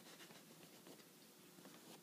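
Near silence: faint room tone with light scratchy handling noise from a fingertip rubbing the sneaker's upper.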